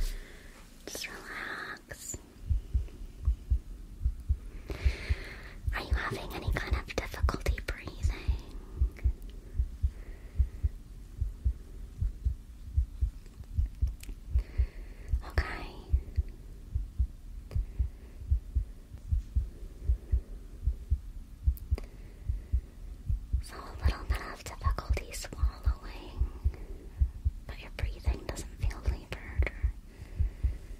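A heartbeat heard through a stethoscope: steady, regular low thuds that set in about two seconds in. Soft whispering comes over them at times, and there is a sharp knock right at the start.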